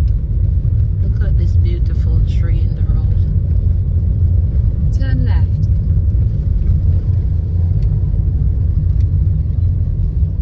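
Steady low rumble of a car driving, heard from inside the cabin.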